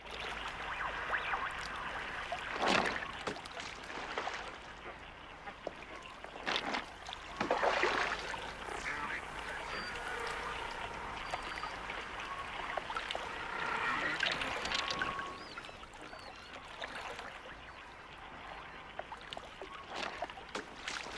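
Lake water lapping on a pebble shore, a steady wash with a few louder splashes about three, seven and eight seconds in.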